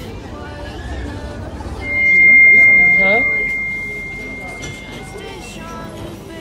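A single high, steady tone, loud at its onset about two seconds in and fading away over about three seconds, over crowd chatter.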